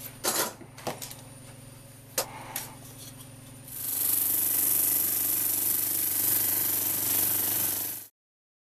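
A few clicks and knocks from bar clamps being handled, then a drum sander comes in about four seconds in, sanding thin burl veneer on a carrier board: a steady loud hiss over a low hum that cuts off suddenly.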